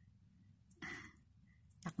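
A woman's short breathy exhale, like a sigh or soft laugh breath, about a second in, in a near-silent pause between her words.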